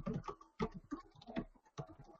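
Computer keyboard typing: a quick, irregular run of keystrokes, about five or six a second, as a command is typed.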